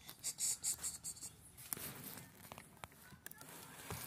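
Handling noise from a phone being moved about close to its microphone. There is rubbing and rustling for about the first second, then scattered light clicks and knocks.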